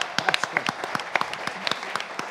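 An audience applauding: many hands clapping together, easing off slightly toward the end.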